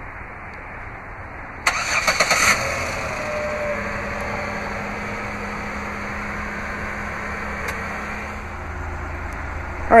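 A 2009 Chevrolet Impala's 3.5-litre V6 started by remote start: a short burst of starter cranking as the engine catches about two seconds in, then a steady idle.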